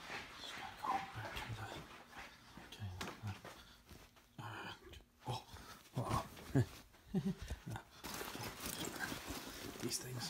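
A pet dog whimpering and whining, with a high whine about halfway through, among rustling and handling noise.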